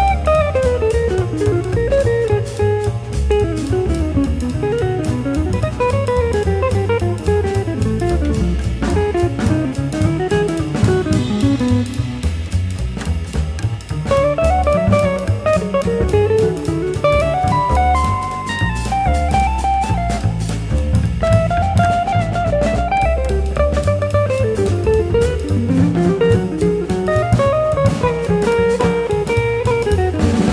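Jazz trio playing: a hollow-body archtop electric guitar runs quick single-note lines that rise and fall, over upright bass and a drum kit with cymbals.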